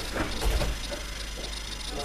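Room noise of a training hall with a soft, dull low thump about half a second in and faint voices in the background.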